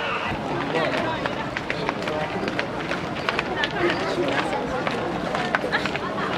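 A large group of people walking on a paved path: many overlapping footsteps clicking irregularly, with scattered chatter among the walkers.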